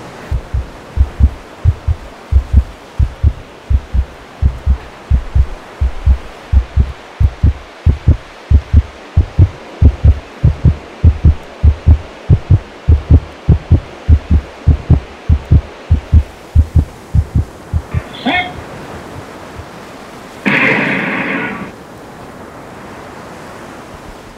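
Heartbeat sound effect: low, evenly spaced double thumps that stop about seventeen seconds in, over a steady hiss. A loud blast lasting about a second follows a few seconds later.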